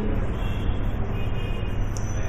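Steady low rumble with a hiss above it, unbroken and without speech.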